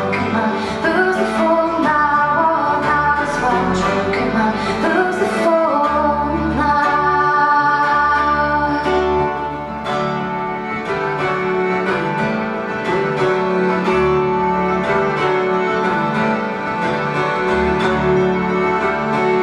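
Live folk band playing: a woman's lead vocal over acoustic guitar, a mandolin-family plucked instrument, button accordion and double bass. About halfway through the singing stops and the band carries on instrumentally, the accordion holding steady notes.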